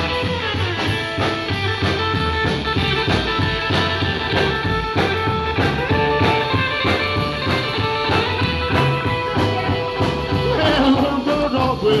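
Live rockabilly band playing an instrumental break: electric guitar lead lines over upright double bass, acoustic rhythm guitar and drums keeping a steady beat. The singer comes back in just before the end.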